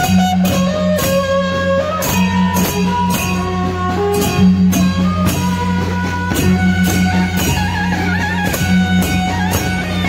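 Procession band music: drums beating a steady rhythm about twice a second under a melody of held notes, over a constant low hum.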